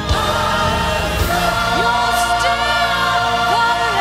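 Church choir singing long, held notes with vibrato over accompaniment, a new chord entering sharply at the start.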